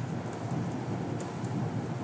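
Steady background hiss with faint scratching and a few light ticks of a stylus writing on a tablet screen.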